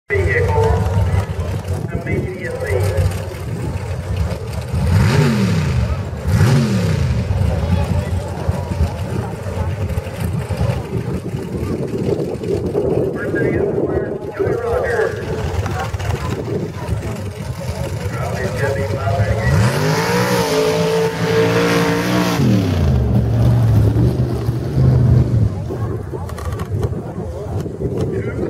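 Truck engine revving: two quick rises and falls in pitch about five and six and a half seconds in, then a longer rev that climbs, holds and drops back about twenty seconds in, over the chatter of a crowd.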